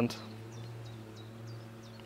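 A steady low hum with a few faint overtones, and now and then short high chirps from small birds.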